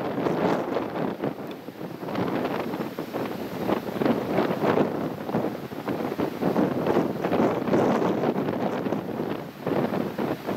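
Wind blowing across the microphone, rising and falling in gusts.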